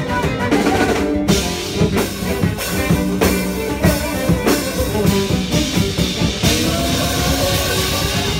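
Live band playing an up-tempo instrumental passage, the drum kit loudest, with violin and a plucked electric string instrument; the sound drops out for a moment about a second in.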